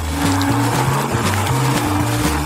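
Electric hand mixer running steadily, its beaters whisking eggs and milk, over background music with a repeating bass line.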